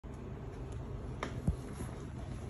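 Two short sharp clicks about a quarter second apart, the second louder with a low thud that drops in pitch, over a steady low hum.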